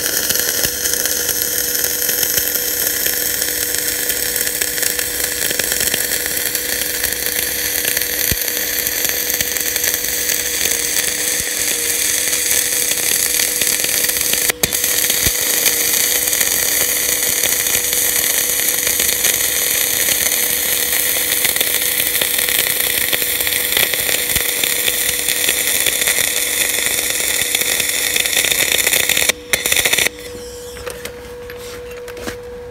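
MIG/MAG welding arc laying a bead on steel channel: a steady crackling hiss. It breaks off for a moment about halfway through and stops just before the end, with a steady two-tone hum underneath throughout.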